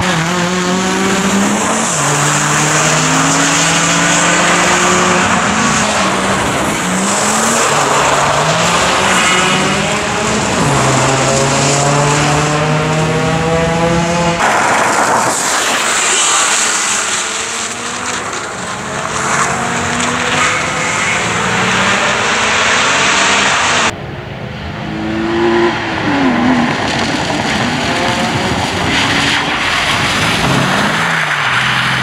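BMW E46 Compact rally car driven hard: the engine revs rise and fall over and over as it accelerates, shifts and brakes for corners, over a steady hiss of tyres throwing spray on wet tarmac.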